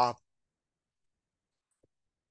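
The tail of a man's drawn-out "uh" ending just after the start, then near silence, with one faint tick near the end.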